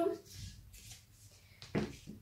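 Handling of a long curved wooden tailor's ruler on fabric spread over a table: faint rustling, then one short soft knock near the end as the ruler is set down on the cloth.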